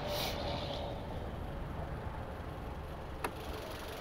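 Jeep Renegade's 2.4-litre MultiAir four-cylinder engine idling as a steady low rumble, with a brief hiss near the start and a single sharp click about three seconds in.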